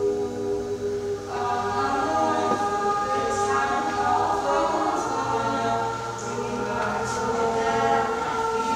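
Mixed-voice teenage choir singing unaccompanied, holding sustained chords; higher voices join the lower parts about a second and a half in.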